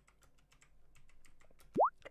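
Computer keyboard keys clicking in a run of typing, then near the end a short upward-sweeping pop tone, the loudest sound here.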